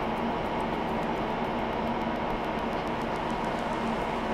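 Rack-mounted IBM server cooling fans running steadily during boot: a constant whir with a steady hum in it.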